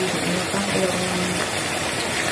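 Chicken adobo sauce simmering and sizzling in a frying pan on a gas hob: a steady hiss, with a wooden spatula stirring through it.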